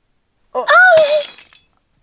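A single short cry of pain from one voice, with glass shattering about a second in and ringing briefly after.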